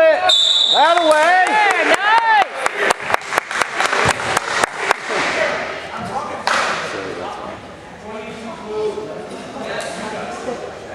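A referee's whistle blows briefly at the start, calling a foul that sends a player to the free-throw line. Spectators call out with rising and falling voices, then someone claps in a quick run of claps, and gym crowd noise carries on more quietly.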